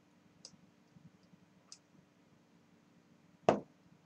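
A drinking glass set down on a tabletop with one sharp knock about three and a half seconds in, after a few faint ticks.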